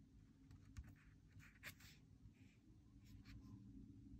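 Very faint paper handling: a few soft rustles and light taps as two planner sheets are held and lined up by hand, over a low room hum.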